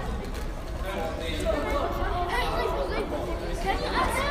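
Indistinct chatter: several people talking at once.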